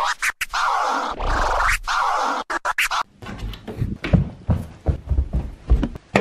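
Intro music with DJ turntable scratching, cut off abruptly about halfway through; after it, irregular soft thumps of footsteps on a wooden floor.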